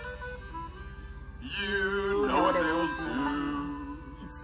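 A recorded children's song playing through a speaker: a man singing over instrumental backing, with held notes and a wavering sung line about halfway through.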